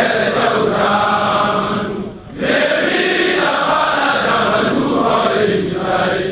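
A group of voices chanting a song in unison, with a short break between phrases about two seconds in.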